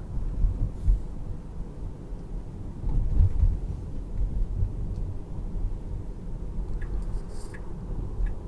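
Uneven low rumble of tyre and road noise heard inside the cabin of a 2019 Tesla Model 3 electric car driving on a city street. Near the end a few soft ticks of the turn signal come in as the car starts a lane change.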